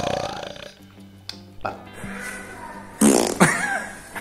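Background music, with a short loud sound about three seconds in.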